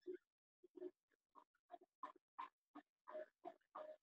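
Faint marker strokes on a whiteboard: about a dozen brief squeaks and scratches as a line of maths is written.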